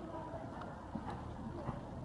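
Hoofbeats of a horse cantering on the sandy footing of an arena, coming as faint, irregular thuds.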